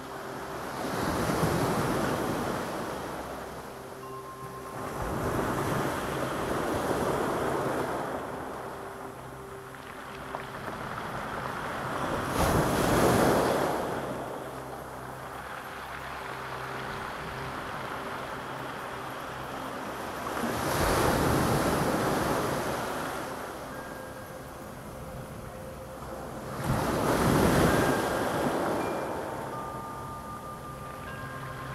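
Sea waves breaking and washing up a pebble and boulder beach, the surf swelling and falling back five times, several seconds apart.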